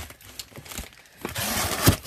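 Cardboard packaging and boxed items rustling and scraping as hands shift them inside a cardboard shipping box. There is a click at the start and a sharp knock near the end.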